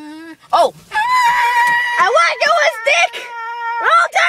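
A high-pitched vocal squeal held on one steady note for nearly three seconds from about a second in, with other short voice sounds breaking over it; a lower hummed note ends just as it begins.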